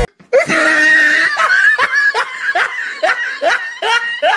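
Loud laughter in a run of short, repeated 'ha' bursts, about three a second, starting after a brief silent cut at the very start.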